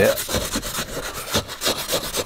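Wet scrubbing pad rubbing back and forth on soapy car window glass in short, uneven strokes, scrubbing off emulsion paint.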